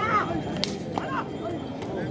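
A whip cracking sharply about half a second in, followed by a couple of fainter cracks, as handlers drive draught bullocks hauling a stone block. A man's rhythmic shouting cuts off just after the start, and a short call comes about a second in.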